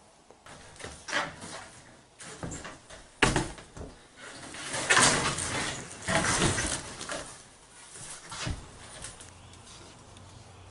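Wire-mesh crayfish traps being picked up and moved about on a wooden floor: irregular rattles, scrapes and knocks, with a sharp knock about three seconds in.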